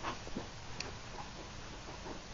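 Faint room tone with a few soft clicks and rustles in the first half second and one small tick a little under a second in.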